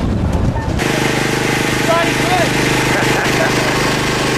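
Outdoor background noise, then, after a cut about a second in, a small engine running at a steady idle, a constant low hum with faint voices over it.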